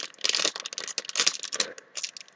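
A foil blind-bag packet crinkled and torn open by hand: a quick run of sharp crackles and rustles.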